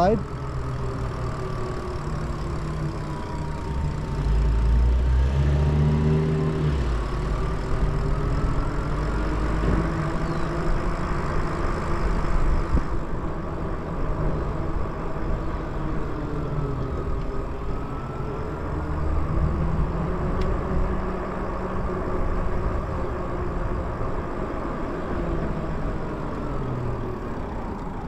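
Riding a Lyric Graffiti fat-tire e-bike: a steady rumble of wind and tyre noise with a faint electric motor whine that slowly rises and falls in pitch as the speed changes. The rumble swells for a few seconds early in the ride.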